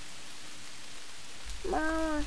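A steady, even hiss of background ambience. Near the end a child's voice calls "mama".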